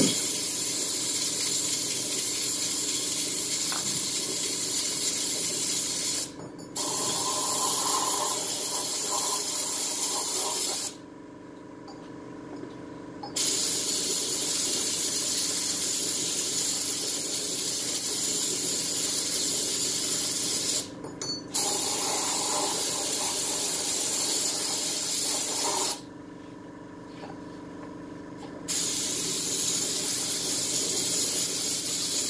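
A loud steady hiss that stops and restarts four times, with two longer gaps of two to three seconds.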